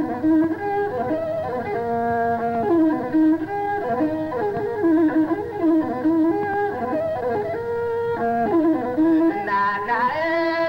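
Ethiopian instrumental passage led by a masinko, the one-string bowed fiddle, playing a repeating melodic phrase with sliding notes.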